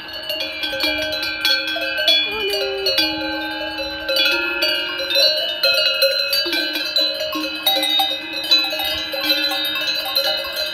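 Many cowbells on a herd of grazing cattle ringing and clanking at once, the bells sounding at several different pitches that overlap and keep restarting as the cows move.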